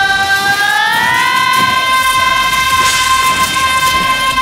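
A male singer's live vocal, isolated from the backing track, belting one long high note that slides up about a second in and is then held steady.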